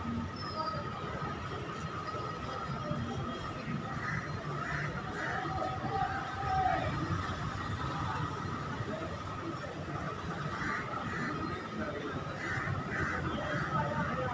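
Background ambience: faint, indistinct voices over a steady high-pitched hum and a low rumble.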